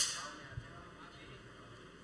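A single sharp click right at the start, with a short bright ringing tail, then faint room noise with a soft low knock about half a second in.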